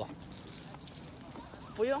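A faint, steady background hiss with no clear event, then a person's voice starting near the end.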